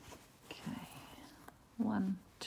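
Faint, quiet handling sounds of hand embroidery as thread is wrapped around a needle for a bullion knot, then near the end a woman's voice softly begins counting the wraps.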